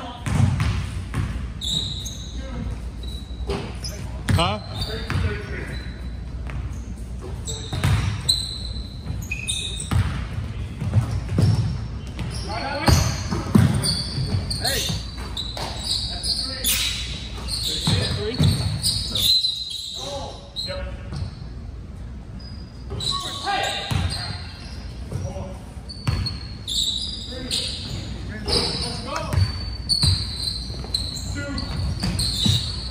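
Basketball game on a hardwood gym court: the ball bouncing as it is dribbled and passed, short high sneaker squeaks, and players' indistinct shouts, echoing in a large hall.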